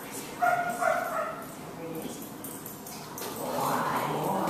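A German Shepherd gives a short, high whine about half a second in. People's voices start near the end.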